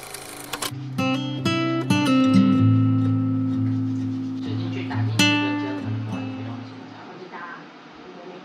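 Background music on acoustic guitar: a few plucked notes, then strummed chords that ring out and fade.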